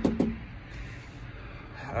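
The last of a man's words, then a pause filled only by faint steady low background noise with no distinct event.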